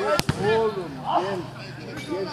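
A football kicked once with a sharp thud about a fifth of a second in, followed by men's voices calling across the pitch.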